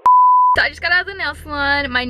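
A single steady electronic beep, a pure tone about half a second long, cut in by editing like a censor bleep, then a young woman talking.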